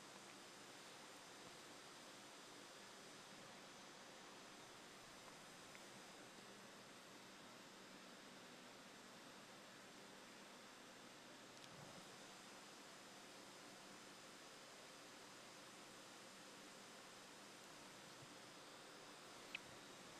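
Near silence: a faint steady hiss with a little hum, and a tiny click near the end.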